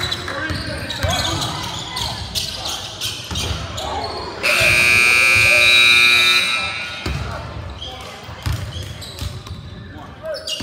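Gym scoreboard buzzer sounding one steady, loud blast of about two seconds, roughly halfway in, with a basketball bouncing on the hardwood and crowd voices echoing in the gym around it.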